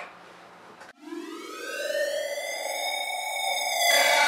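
An electronic, siren-like rising tone used as an edited transition sound effect. It climbs in pitch and grows louder for about three seconds, then changes to a loud, noisy burst near the end.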